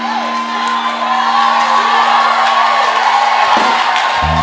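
A church keyboard holds one sustained chord until shortly before the end, over a congregation's scattered shouts and cheers.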